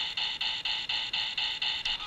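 Tactical laser tag gun firing on full auto: an electronic buzzing tone pulsing about four times a second, matching an assault-rifle setting of 250 rounds a minute, then stopping near the end.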